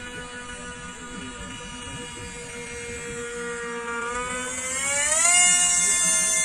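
Motor and propeller of a Zagi RC flying wing in flight, a steady whine that rises in pitch and grows louder about four to five seconds in, as the plane comes in low and climbs.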